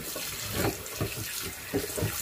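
Tap water running onto a cast iron skillet in a stainless steel sink while a dish brush scrubs the pan, with irregular scrubbing and splashing strokes over the steady flow.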